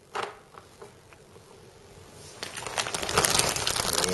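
A short knock near the start, then a quiet stretch, then plastic packaging crinkling and rustling as it is handled, getting louder in the last second and a half.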